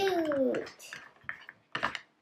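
A child's voice trailing off in a falling tone, then light clicks and one sharper clack near the end from a hard plastic toy merry-go-round being turned and handled.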